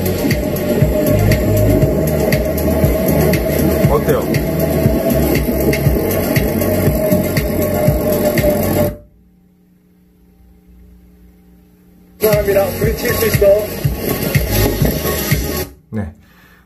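Music with a heavy bass beat and a voice, played from a phone over Bluetooth through a BT-298A mini amplifier and a bookshelf speaker, with the bass and treble turned up. About nine seconds in the sound cuts out to a faint hum for about three seconds. It then comes back briefly and stops again just before the end.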